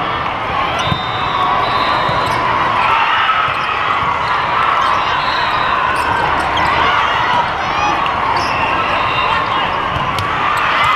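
Volleyball rally in a big reverberant sports hall: a steady din of many voices from the surrounding courts, with sneakers squeaking on the court and a few sharp smacks of the ball being played.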